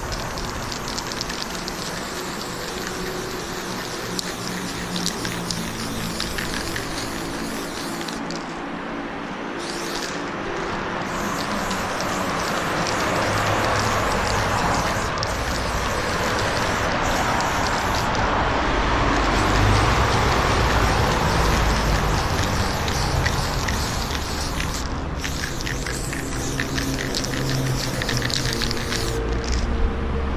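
Aerosol spray paint can hissing in long bursts with short breaks, over a steady low hum.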